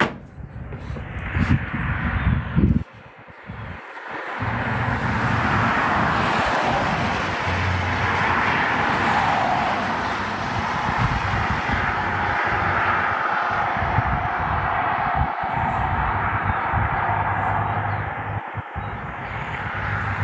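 Road traffic: a continuous rush of tyre and engine noise that builds a few seconds in and then holds steady, with an irregular low rumble of wind on the microphone underneath.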